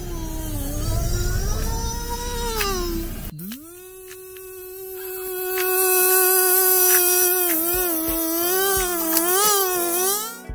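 Music with a high singing voice: wavering sung notes over a low rumble, then, after a cut about three seconds in, the voice slides up into one long held note. Near the end the note starts to waver as a bass and a steady beat come in.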